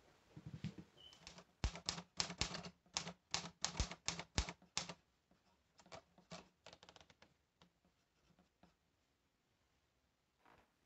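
Manual typewriter typing: a quick run of key strikes, about four or five a second, for the first five seconds. Fainter, sparser taps follow over the next few seconds.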